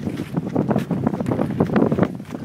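Wind buffeting the microphone: a rough, uneven rumble with irregular crackles.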